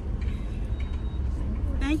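Steady low rumble of a car heard from inside its cabin, with a faint thin high tone that comes and goes within the first second.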